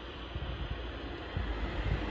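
Wind buffeting the microphone of a handheld phone, a low rumbling over a steady rush that grows stronger a little past halfway through.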